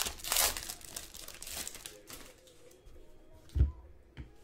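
Foil wrapper of a Panini Spectra trading card pack crinkling and tearing as it is ripped open, the crackle thinning out after about two seconds. A single thump near the end as the stack of cards is set down on the table.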